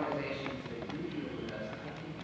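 Muffled, indistinct speech in a reverberant hall, heard through poor, murky tape audio.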